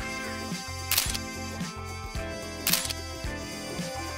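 Upbeat background music with a steady, repeating bass line. Two sharp clicks stand out over it, the first about a second in and the second about a second and three-quarters later.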